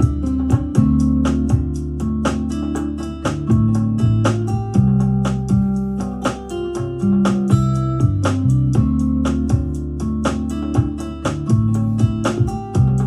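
Playback of a programmed demo track from a DAW: a sampled acoustic guitar (Ample Sound Martin D-41 plugin) with programmed drums, snaps and claps, in the faster section at 120 beats a minute. There is a steady beat of percussion hits over sustained low notes and chords.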